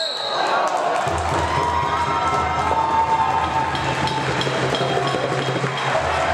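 Basketball game in a gym: a referee's whistle trails off at the start, then players' and spectators' voices echo around the hall over a steady low hum. Light, regular taps come in during the second half.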